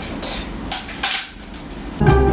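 Plastic drinking straws being handled and rattled together, two short rustling bursts, the second longer, within the first second or so.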